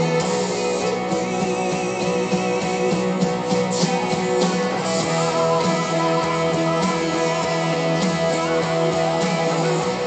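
Electric guitar, a Gibson Les Paul Studio Faded played through a Fender '59 Bassman Reissue amp, playing sustained, ringing chords and notes as part of a worship rock song, with a brief vibrato early on.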